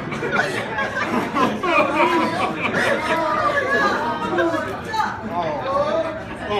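Crowd chatter: many voices talking over one another in a busy room, none clearly picked out.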